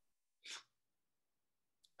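Near silence, broken about half a second in by one short, faint breathy sound from a person, like a quick exhale through the nose or mouth.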